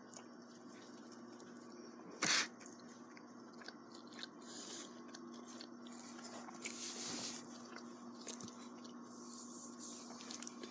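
Close-up chewing and crunching of a fried chicken strip, with small mouth clicks and one brief louder noise about two seconds in. A faint steady hum runs underneath.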